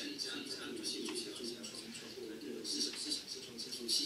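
A man talking over a video call, his voice heard through the room's loudspeakers.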